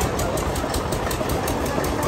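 A motor running steadily with a fast, even beat of about seven pulses a second, with faint voices underneath.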